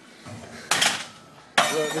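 Two sharp metallic clanks with a brief ring, a second apart, as a steel barbell bar is set down.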